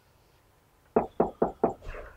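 Knocking on a wooden door: four quick, loud raps starting about a second in, followed by a fainter one or two.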